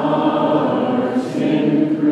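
A congregation singing a hymn together, many voices holding long, sustained notes.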